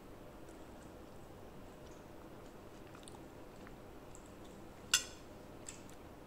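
A person quietly chewing a mouthful of soft hard-boiled egg salad with mayonnaise, with faint small mouth sounds. A single sharp click sounds about five seconds in.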